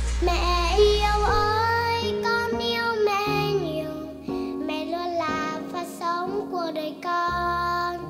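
A young girl singing a Vietnamese children's song about her mother, with a sustained sung melody over instrumental accompaniment.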